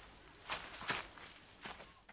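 A few faint footsteps, irregularly spaced.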